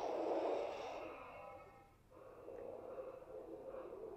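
Star Wars Galaxy's Edge Sith holocron toy starting up: a whooshing hiss that fades out about two seconds in.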